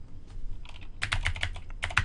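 Typing on a computer keyboard: a quick run of key clicks that starts about half a second in and comes faster in the second half.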